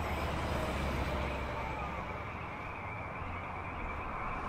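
Low rumble of a vehicle passing on a nearby highway, easing off near the end, under the steady tinny hiss of a drive-in theater speaker.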